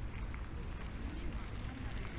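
Outdoor riverside promenade ambience: a steady low rumble with the scattered chatter of passers-by.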